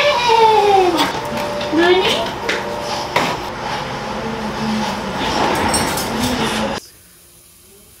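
A high-pitched voice with drawn-out, downward-gliding calls in the first second and again about two seconds in, over a steady rushing noise that cuts off abruptly near the end.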